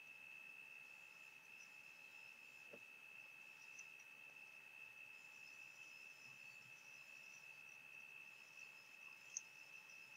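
Near silence: faint room tone with a thin, steady high-pitched whine running underneath, and one small tick near the end.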